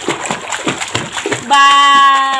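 A toddler splashing in a small home swimming pool, his hands slapping the water in quick irregular splashes. About a second and a half in, a voice calls out in one long held note that slowly falls in pitch.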